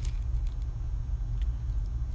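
Steady low hum with a faint click about one and a half seconds in, as a jighead is handled out of its plastic package.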